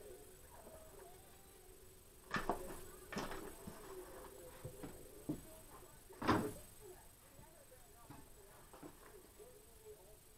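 Cardboard box of scrap wire being rummaged through, with a few knocks and rustles; the loudest knock, about six seconds in, is a small box of wires and parts being set down on the workbench.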